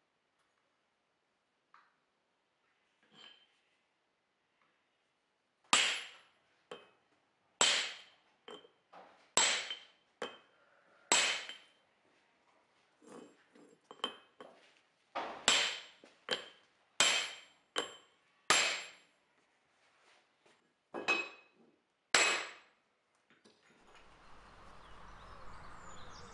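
Hammer blows on a steel ball punch, sinking a copper disc into a steel dishing block to dish a bowl: a dozen or so sharp, ringing metal strikes, roughly one a second with a few quicker pairs, starting about six seconds in.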